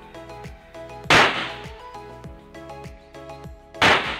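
Two handgun shots about two and a half seconds apart, each sharp and very loud with a short echoing tail, over background music with a steady beat.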